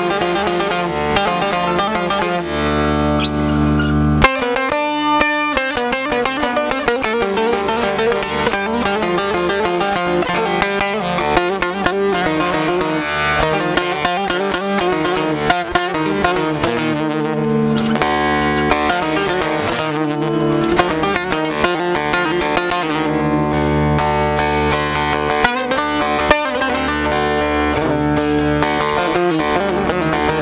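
Bağlama (long-necked Turkish saz) playing a fast plucked instrumental passage of a Turkish folk song over a steady low accompaniment, with a short break about four seconds in.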